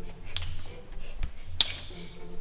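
Two sharp finger snaps about a second and a quarter apart, with a fainter tap between them.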